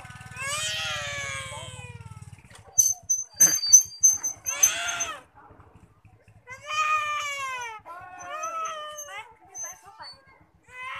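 A bird giving a series of drawn-out, downward-sliding calls, with a quicker run of short calls near the end. A low pulsing hum fades out after about two seconds, and a few sharp clicks and a high thin whistle come about three to four seconds in.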